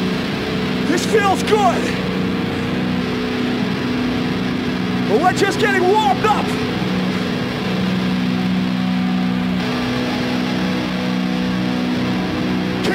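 A steady low drone of held notes from the band's amplified instruments, with shouting voices rising over it briefly about a second in and again around five to six seconds in.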